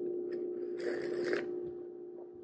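A short sip of espresso from a small glass cup, heard about a second in, over a steady hum.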